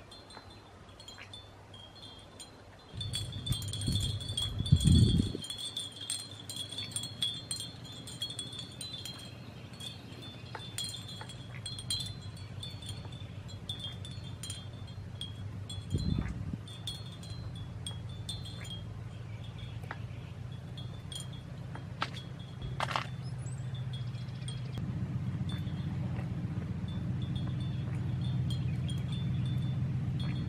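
Wind chimes ringing with high, bright tones, busiest in the first third and fainter after. Under them, from about three seconds in, a low steady hum grows louder toward the end, with a few dull thumps near the start and halfway.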